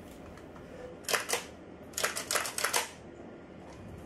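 Sharp mechanical clicks from handling a KWA AKG-74M airsoft rifle: two clicks a little after a second in, then a quick run of about five clicks a second later.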